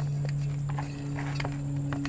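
Hands working soil around a plant cutting in a small terracotta pot: scattered light taps and scrapes, over a steady low hum.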